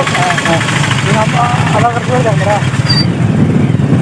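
A motorcycle engine running steadily in street traffic, with people's voices talking over it in short phrases.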